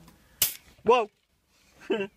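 A single sharp click, then a short vocal sound from a person, rising then falling in pitch, followed by a moment of dead silence and the start of another vocal sound near the end.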